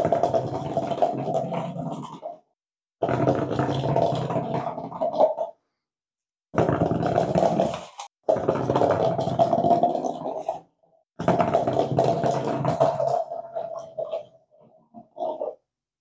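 Rubber-band-powered paper cup toy running across a wooden laminate floor on its plasticine-filled bottle-cap roller, the cup buzzing as it rolls. Five rough buzzing spells of one and a half to two and a half seconds each, with silence between.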